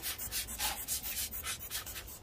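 A plastic soil scoop scraping through coarse granite grit (masato) as it is filled for repotting. The grit makes a quick run of short, gritty strokes, about five a second.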